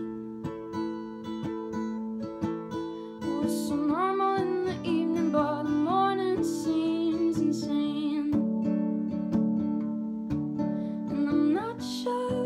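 Steel-string acoustic guitar, capoed, played in chords with regular plucks, and a woman singing over it in stretches.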